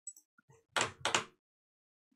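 A few faint clicks, then two short, loud knocks about a third of a second apart, a little under a second in.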